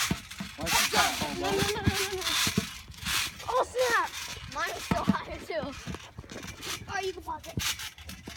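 Excited high-pitched voices calling out and laughing without clear words, over scattered knocks and rubbing noise.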